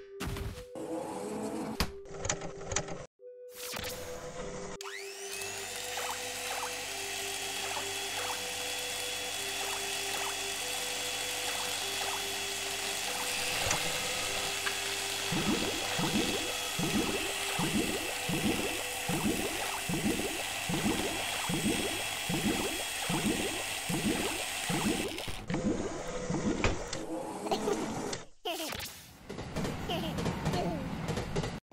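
Cartoon sound effects of a power tool starting with a rising whine and then running with a steady whir, joined midway by regular strokes about two a second and bubbly effects. Underneath runs background music with a two-note figure alternating high and low.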